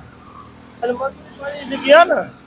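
Short snatches of speech over the low sound of roadside traffic, with a vehicle going by at the end.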